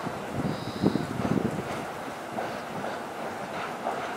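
Freight train of Koki container flatcars rolling past on a viaduct. The rolling noise is steady, with a cluster of louder rumbling wheel knocks about a second in.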